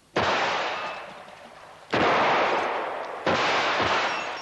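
Three handgun shots roughly a second and a half apart, each a sharp crack followed by a long, fading echo.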